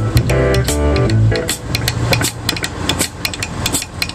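Live rock band playing: drum kit keeping an even cymbal beat under guitar and bass guitar. The bass drops out about a third of the way in, leaving guitar and cymbals.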